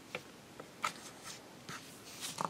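A few faint, short ticks and light taps: a steel clay slicer blade and fingertips touching the work surface as a thin strip of polymer clay is cut.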